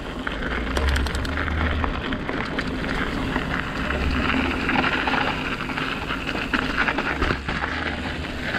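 A 29-inch hardtail mountain bike riding a dirt trail: steady tyre noise on the dirt, with a cluster of clicks and rattles about a second in and more near the end as it goes over bumps. Wind buffets the microphone with uneven low rumbles.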